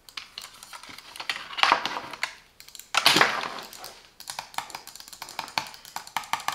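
A Silvercrest plastic gaming mouse being handled: a run of small sharp clicks and taps, with two louder scraping bursts about two and three seconds in.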